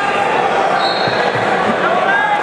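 Spectators in a large gymnasium talking and shouting, echoing in the hall, with some dull thuds.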